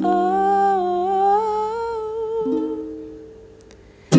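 A woman singing one long held "oh", its pitch rising slightly and wavering, over a soft ukulele chord strummed at the start and again about two and a half seconds in. Both fade away in the last second.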